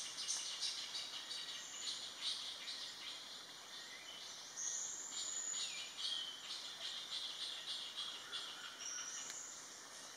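Faint forest ambience of small birds chirping and twittering, with insects, and two brief high whistles, one about midway and one near the end.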